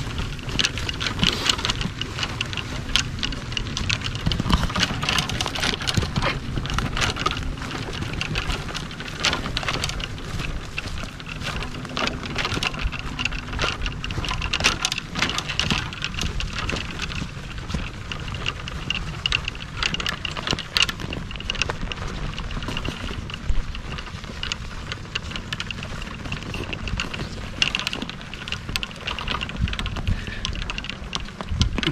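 Golf trolley rolling over bumpy grass: a steady rumble from the wheels with continual rattling and clicking of the clubs and trolley frame.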